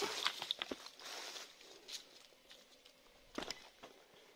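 Footsteps of shoes on rock and loose stones while climbing down among boulders: scattered scuffs and knocks, the loudest cluster about three and a half seconds in.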